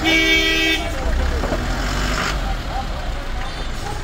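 A vehicle horn gives one short steady blast, under a second long, right at the start, over a low rumble of engine and street noise.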